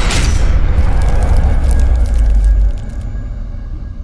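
Cinematic logo-reveal sound effect: a deep boom and heavy low rumble with a scatter of fine crackling ticks like sparks, the rumble dropping away about two and a half seconds in and fading out near the end.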